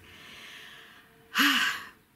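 A woman draws a soft breath, then about one and a half seconds in lets out a short, loud, breathy sigh with a little voice in it.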